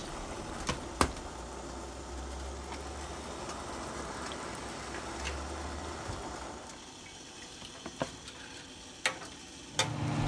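Water boiling in a stainless steel pot of blanching morning glory greens: a steady bubbling hiss that drops away after about six and a half seconds. A few sharp clicks sound through it.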